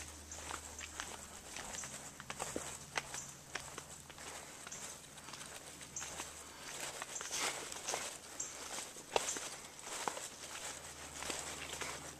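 Footsteps of a person walking along a dirt woodland trail: irregular light crunching steps, over a steady low hum.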